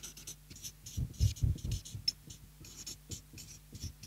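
A marker pen writing on flip-chart paper: a run of short, irregular scratching strokes as letters are drawn.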